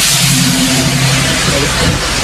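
A motor vehicle engine running close by: a steady low drone that comes in just after the start and stops near the end, over a broad hiss of traffic noise.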